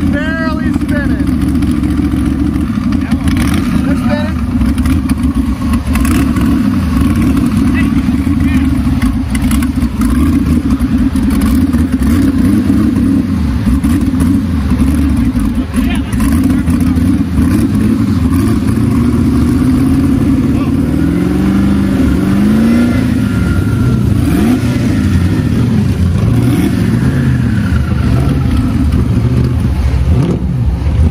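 Twin-turbo LS V8 engine running steadily, with the revs rising and falling a few times about two-thirds of the way through.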